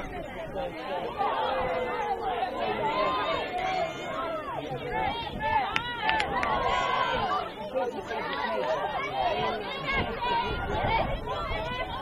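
Many high-pitched voices shouting and calling over one another, with no clear words, from players and spectators at a girls' lacrosse game. A couple of sharp clicks come about six seconds in.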